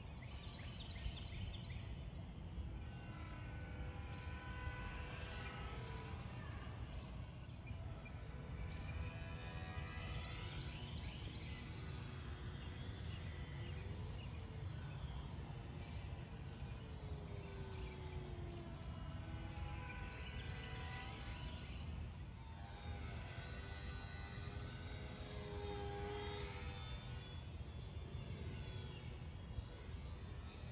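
Ultra-micro electric motor and propeller of a small foam board RC plane whining faintly, its pitch sliding up and then down each time it flies past, several passes in all. A steady low rumble of wind on the microphone lies underneath.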